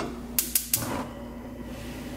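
Gas range burner's spark igniter clicking about four times in quick succession as the knob is turned to light. The gas then catches and burns with a faint steady rush.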